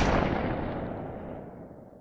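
Fading tail of a loud, deep boom-like impact sound effect that ends an outro logo sting. It dies away steadily over about two seconds, its treble fading first and leaving a low rumble.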